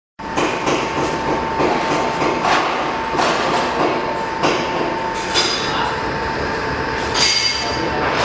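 Liquid packaging machine of the vertical form-fill-seal type running, with steady mechanical noise, repeated knocks and clicks, and a constant high whine.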